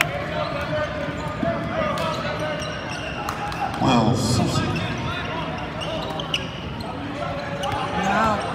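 Basketball dribbling on a hardwood gym court during a game, with the voices of players and spectators echoing in a large gym. A louder voice calls out about four seconds in.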